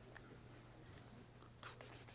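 Near silence: room tone with a low steady hum and a few faint rustles and clicks, a slightly louder rustle near the end.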